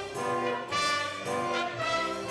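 A small orchestra playing, with the brass to the fore: trumpets and trombones hold notes over the strings and woodwinds, moving to a new note about every half second.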